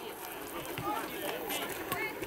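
Several voices shouting and calling out at once across a football pitch, with a few faint knocks among them.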